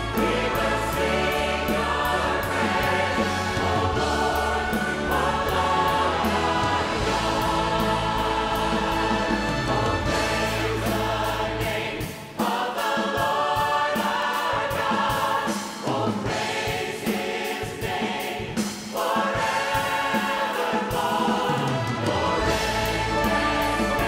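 Church choir and worship singers singing a gospel song together, backed by a band with drum kit and cymbals. About halfway through, the deep bass drops away and the voices carry on over lighter accompaniment.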